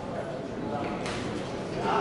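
Men's voices calling out in a large, echoing sports hall over the steady noise of the crowd.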